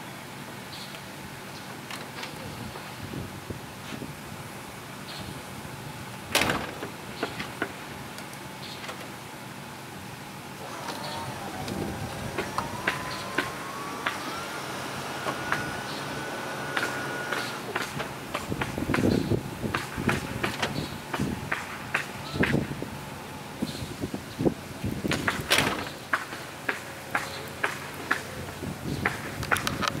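1975 Oldsmobile Delta 88's power convertible top being lowered. From about ten seconds in, the top's motor whines, its pitch rising and then holding for several seconds. Clicks and knocks from the top's latches and folding frame run throughout, the loudest about six seconds in and again near the end.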